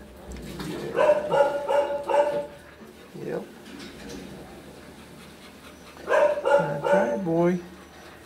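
A dog vocalizing in two runs of short, pitched calls, about four quick notes each: one run about a second in, the other near the end, which finishes on a falling note.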